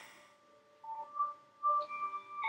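Three short, pure electronic tones at different pitches, one after another, like the first notes of a sparse electronic melody. The last is held a little longer.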